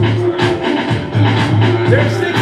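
Music with a lot of bass and a steady drum beat, played loud through four Rockville CCL6T 6-inch 70-volt ceiling speakers, filling a large room.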